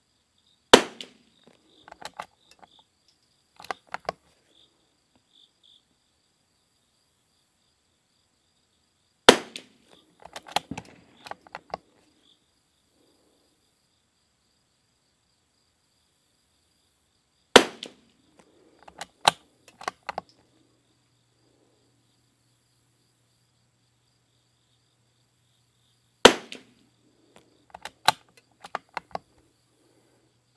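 Four shots from a .22 rimfire bolt-action rifle firing RWS R50 match ammunition, spaced about eight to nine seconds apart, each followed by a few smaller clicks and clacks as the bolt is worked for the next round. Insects chirp steadily and faintly behind.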